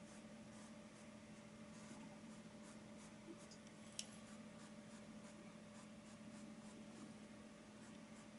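Faint scratching of a paintbrush stroking and dabbing acrylic paint onto a stretched canvas, over a steady low hum, with one sharp click about four seconds in.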